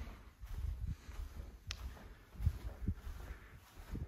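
Soft footsteps walking across a carpeted floor: a few dull, low thuds, with one sharp light click about halfway through.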